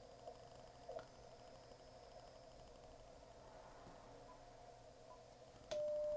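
Icom IC-7300's CW sidetone: a steady single tone of just under a second near the end, with a click as it starts and as it stops, while the radio briefly transmits a carrier to read the antenna's SWR. Before that there is faint receiver hiss, with faint warbling FT8 data tones in the first second.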